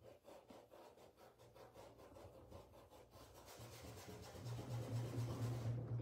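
Paintbrush rubbing paint onto fabric in quick repeated strokes, faint.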